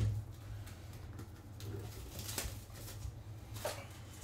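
Soft handling noise of a cardboard trading-card box being picked up and turned in the hand, with a couple of brief scrapes about two seconds in and near the end. A steady low hum runs underneath.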